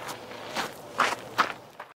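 A man's footsteps on dirt and gravel as he walks away: about five steps, the two in the middle loudest and the last fainter.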